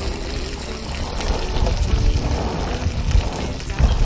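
A spoon stirring apples in water in an aluminium pot, a light liquid swishing, over soft background music and a low rumble of wind on the microphone.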